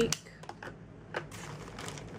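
Scattered light clicks and taps of makeup cases being handled as a blush is picked up.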